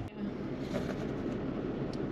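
Steady low vehicle rumble and cabin noise inside a truck cab, with a short click at the start.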